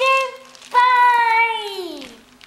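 A boy's high voice in long, drawn-out sung calls without words: one ends just after the start, and a second begins just under a second in, held and then sliding down in pitch at the end.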